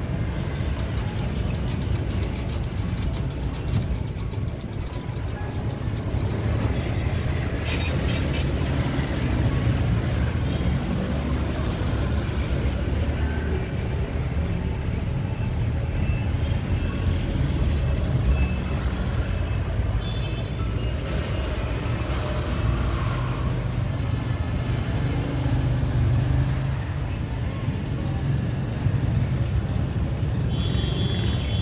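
Steady low rumble of road traffic, with a few clicks about eight seconds in and a short run of high beeps late on.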